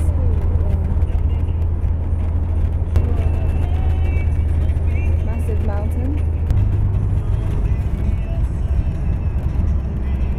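Coach engine and road noise heard from inside the moving bus: a steady low drone that shifts in pitch about six and a half seconds in.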